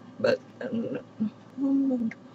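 A woman's voice making four short vocal sounds that form no clear words, the last one held a little longer near the end.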